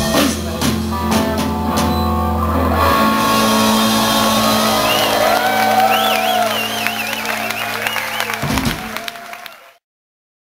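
Live rock band playing, with guitar and sustained held notes, heard through a handheld camera's microphone. The sound fades quickly and cuts off just before the end.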